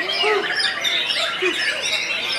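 A dense chorus of caged white-rumped shamas (murai batu) singing at once in competition, many overlapping whistled, sliding and rasping notes with no pause, with people's voices mixed in beneath.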